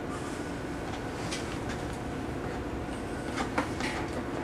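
Battery-operated tin toy robots running together, a steady whirring and rattling of their motors and tin bodies, with a few sharp clicks near the end.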